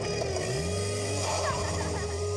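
Car engine sound effect: the engine revs up about half a second in, then runs steadily as the car drives off.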